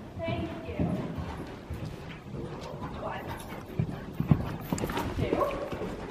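Horse's hooves striking the sandy arena footing at a canter, with voices in the background.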